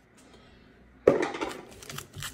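Quiet for about a second, then a sudden rustle of a foil trading-card booster pack being picked up and handled, fading out over the next second.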